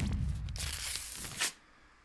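Editing transition sound effect: a low whoosh with a falling pitch, then a loud paper-tearing rip from about half a second in that cuts off suddenly about a second later.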